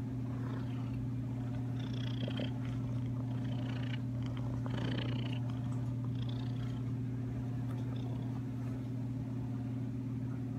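Tabby cat purring steadily and loudly, close to the microphone.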